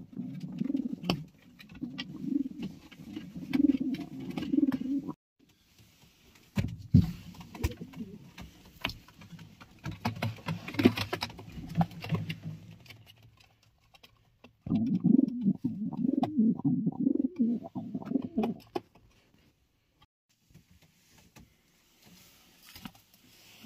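Racing pigeons cooing in a small nest box, in low rolling spells through the first five seconds and again for about four seconds past the middle, with scattered taps and clicks in between.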